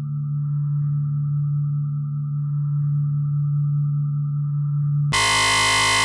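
Electronic drone music: a steady low hum with a thin high tone above it that flickers about every two seconds. About five seconds in, a much louder, harsh buzzy tone cuts in suddenly.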